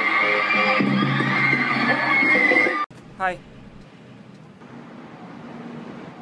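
Live concert music heard through a phone recording, with crowd noise, cut off abruptly about three seconds in. A woman then says "hi" over faint street background.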